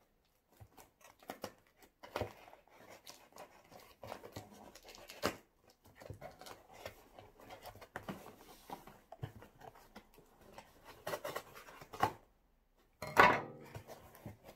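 Cardboard shipping box being handled and its packing tape picked at and peeled, giving scattered scratches, rustles and small clicks. Near the end comes one loud rip as the lid flap comes free.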